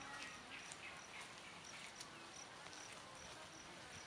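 Faint insect chirping in forest, short high-pitched pulses repeating steadily about three times a second.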